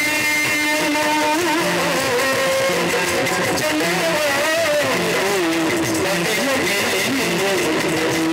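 Yakshagana stage music: drum strokes keeping a steady beat about once a second, with bright cymbal-like strikes, under a steady drone and a wavering, gliding melodic line.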